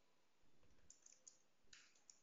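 A few faint computer keyboard keystrokes over near-silent room tone, with a soft low thud about half a second in.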